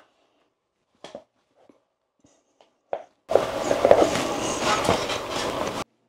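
A few faint clicks from the rebuilt multiport valve diverter assembly being handled by its handle, then about two and a half seconds of loud rattling, clattering noise that stops abruptly.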